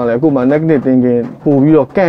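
Speech only: a man talking in short phrases, close to a clip-on microphone.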